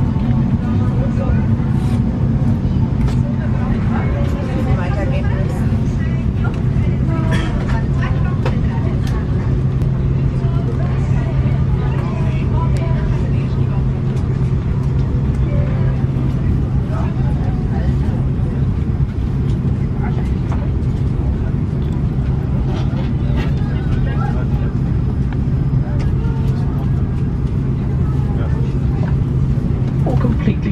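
Steady low hum of an Airbus A340-300 cabin's air-conditioning while the aircraft is parked, under an indistinct murmur of passengers talking, with occasional light rustles and clicks.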